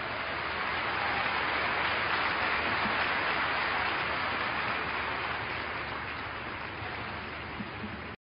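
Audience applauding, building over the first few seconds and then slowly dying away.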